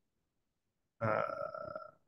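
A man's single drawn-out "uhh" hesitation sound, starting suddenly about a second in and held at a steady pitch for just under a second.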